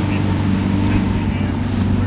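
Motor of a small inflatable boat running steadily, a constant low drone.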